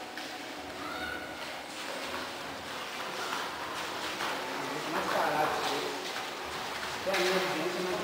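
Indistinct voices talking quietly in a large, echoing hall, with no clear kicks or impacts.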